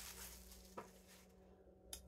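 Near silence: room tone with a steady low hum, and a faint rustle of an empty plastic paper-towel wrapper with one light tap just under a second in as it drops into the bag.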